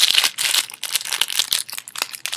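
Packaging crinkling and rustling as it is handled, a dense run of irregular crackles.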